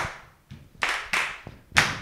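A few hand claps, about three or four, unevenly spaced, with short quiet gaps between them.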